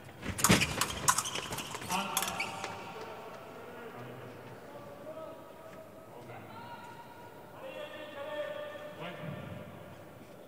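Quick clatter of épée blades clashing and fencers' feet striking the piste in a fast exchange during the first two seconds or so. It is followed by several long cries later on.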